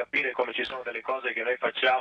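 Only speech: a man talking over a radio link, his voice sounding thin and band-limited.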